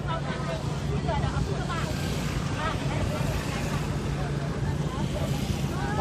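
A vehicle's engine running steadily at low speed, heard from inside the cab, with voices of a crowd talking in the background.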